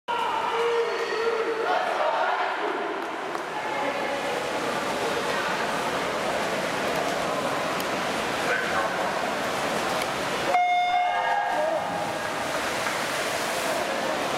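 Steady crowd chatter in a swimming venue. About ten and a half seconds in, the short electronic start signal of a swim race sounds, and the crowd noise carries on after it.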